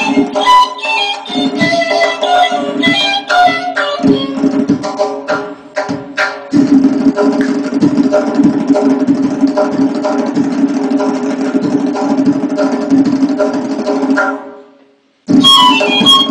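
Persian traditional duet of ney (end-blown reed flute) and tombak (goblet drum) in the Chahargah mode: a ney melody over sharp tombak strokes, then, about six seconds in, a long continuous tombak roll that fades away. After a brief silence near the end the ney and tombak come back in together.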